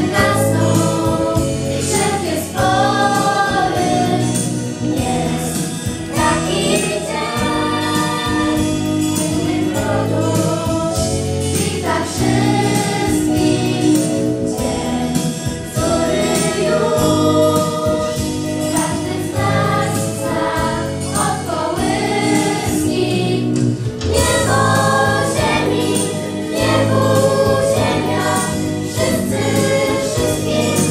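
A girls' choir singing a Polish Christmas carol over a steady instrumental accompaniment.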